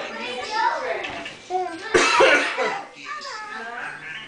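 A baby's wordless vocal sounds while she crawls, with a short cough-like burst about two seconds in.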